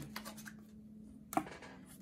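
Tarot cards being handled and laid on a table: soft card sliding and a few light taps, with one sharper tap a little past halfway, over a faint steady hum.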